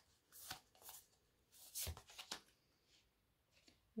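Faint handling of a deck of tarot cards: a few short slides and flicks of card against card as a card is drawn from the deck.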